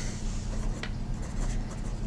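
Medium steel nib of a Penbbs 355 fountain pen writing on paper: a soft, steady scratch with a few small ticks as the strokes of short figures are made.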